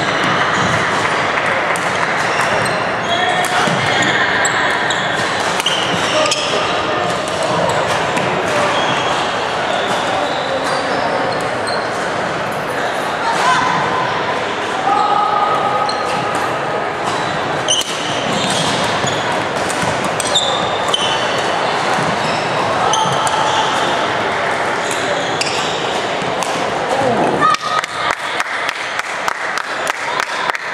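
Background chatter of many voices in an echoing sports hall, with sharp clicks of badminton rackets striking the shuttlecock during play. Near the end the talk drops away and a quick run of sharp clicks stands out.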